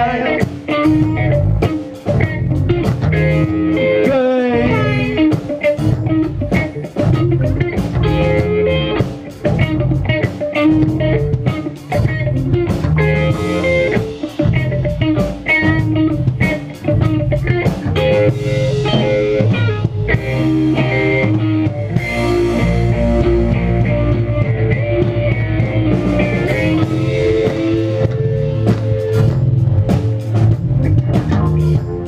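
Live rock band playing an instrumental passage: an electric guitar lead with bent notes over a second guitar and a drum kit.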